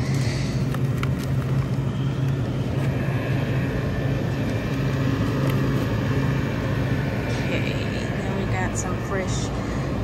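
Steady low hum of a supermarket produce aisle with refrigerated display cases, with a few light plastic clicks in the first second or so as a strawberry clamshell is picked up and put in a plastic shopping basket.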